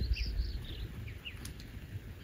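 A flock of small songbirds, mostly bluebirds, giving short high chirps and calls, several in the first second and fewer after, over a low rumble.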